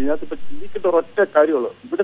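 Speech only: a caller talking over a telephone line, the voice thin and narrow, with a short pause near the end.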